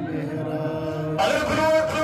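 A man's voice chanting an Islamic devotional recitation into a headset microphone, in long held notes. It holds a quieter low note for about the first second, then swells into a loud, higher sustained note.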